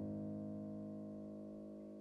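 A low chord on a Steinway grand piano, held and ringing, fading slowly with no new note struck.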